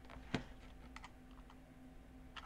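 A few clicks from a computer keyboard and mouse, the first, about a third of a second in, sharp and much the loudest, over a faint steady hum.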